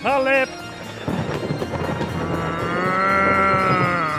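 The last syllables of a shouted name, then a crackling thunder-like crash sound effect, followed by a long held note that swells and then fades.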